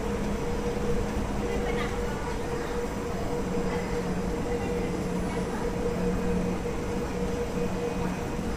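Kawasaki C151 MRT train standing at the platform, its onboard equipment giving a steady hum. A higher tone is held throughout and a lower tone comes and goes.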